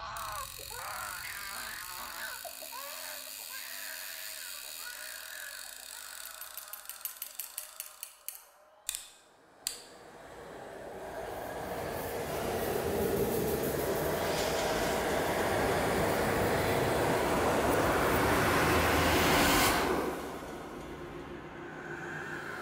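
Film-score sound design. For the first eight seconds, bending, wailing tones sound over a held low tone, then a run of quickening clicks ends in two sharp hits. After a moment's hush a noisy swell builds for about ten seconds and drops off suddenly.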